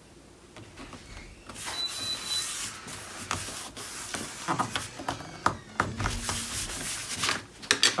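Hands rubbing and smoothing a patterned paper panel down onto a cardstock album page: dry paper-on-paper friction that starts about a second and a half in, with paper sliding and a few light taps as the pages are shifted near the end.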